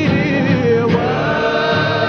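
A Cape Malay choir's male soloist singing a Dutch-language song in held, wavering notes, with the choir's voices behind him.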